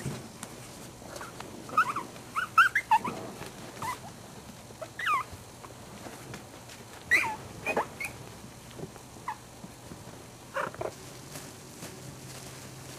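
Young puppies squeaking and whimpering: short high-pitched cries that bend up and down in pitch, a few at a time, coming several times over.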